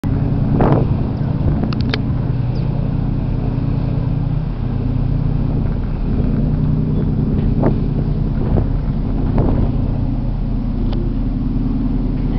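Mersey ferry's engines running: a steady low drone, with a few brief sharp sounds over it.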